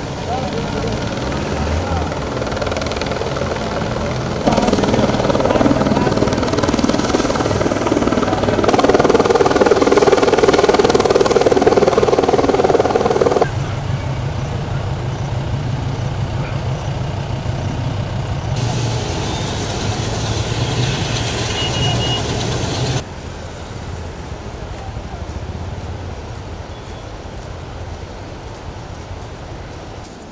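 Field recordings spliced together, changing abruptly at each cut: the steady rush of a muddy river in flood, and in the middle stretch a helicopter's rotor beating fast and evenly.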